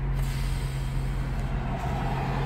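Car engine idling while the car stands still, heard from inside the cabin as a steady low hum.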